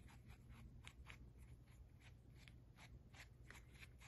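Faint, repeated scratchy strokes, about three a second, from a flat synthetic brush working a mix of coarse glitter and Mod Podge glue in a small plastic tub.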